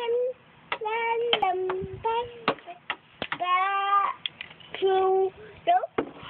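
A toddler singing a tune in long held notes, with short pauses between phrases and a few sharp clicks among them.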